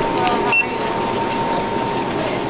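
A self-checkout's handheld barcode scanner gives one short, high beep about half a second in, over a steady background hum and noise.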